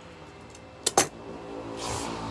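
A motor vehicle passing by: a steady engine hum with a haze of road noise that swells toward the end. Two sharp clicks about a second in, the second one louder.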